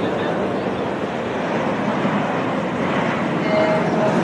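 Steel roller coaster train running along its track, a steady noisy rush, with people's voices mixed in.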